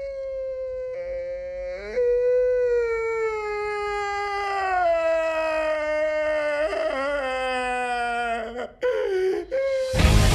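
Two or three human voices holding long, howl-like notes together, sliding slowly down in pitch, with a shorter wavering note near the end.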